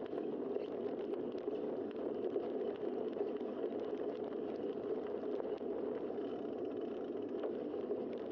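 Steady, muffled rush of wind and road noise from a bicycle in motion, picked up by a bike-mounted camera, with faint small clicks and rattles.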